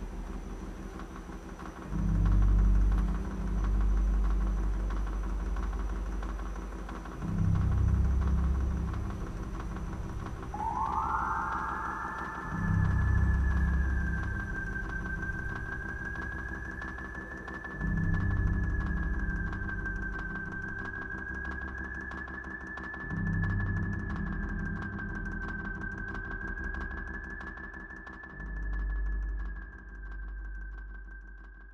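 Ambient soundtrack drone: deep rumbling swells that come about every five seconds, joined about ten seconds in by a single high tone that slides up and then holds, wavering slightly.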